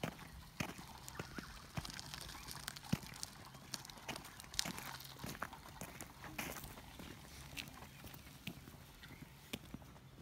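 Irregular light footfalls and small knocks on grass and gravel, with a faint steady low hum underneath.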